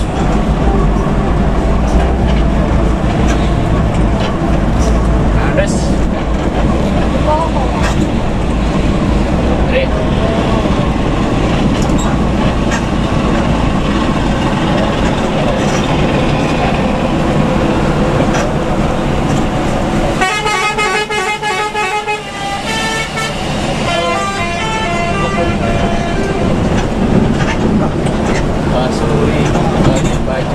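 Heavy diesel bus engine and exhaust droning at highway speed, heard from inside the cabin. About twenty seconds in, a multi-tone musical bus horn plays a quick rhythmic run of notes for a couple of seconds, then plays again shortly after.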